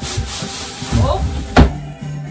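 A large cardboard box being shifted and scraped about, cardboard rubbing on the floor and furniture, with one sharp knock about one and a half seconds in.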